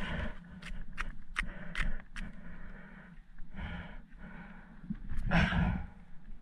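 Handling noise as grouper are stowed in an insulated fish bag on a boat deck: about five light clicks and knocks in the first two seconds, then two longer rushes of rustling noise a few seconds in.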